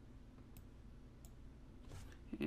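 Near silence with a few faint computer mouse clicks, spaced well under a second apart.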